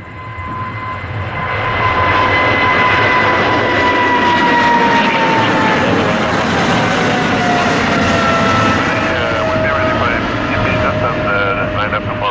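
Boeing 777's twin GE90 turbofans at takeoff thrust as the jet lifts off and climbs away: a loud roar that builds over the first couple of seconds, with a whining tone that glides slowly down in pitch as the aircraft passes and moves off.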